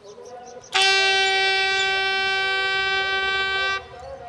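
A bugle sounding one long, steady note of about three seconds, starting just under a second in, as part of a ceremonial bugle call for the fallen.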